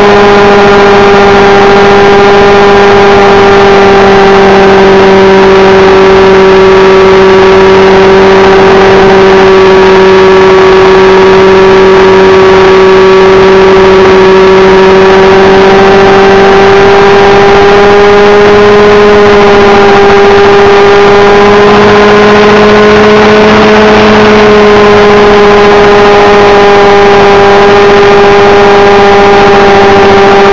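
Thunder Tiger Raptor RC helicopter's glow (nitro) engine running steadily at flight speed, together with the whir of its wooden main rotor blades, picked up very close and loud by a camera on the helicopter's own frame. The engine note holds a steady pitch that wavers slightly, rising a little about two-thirds of the way through.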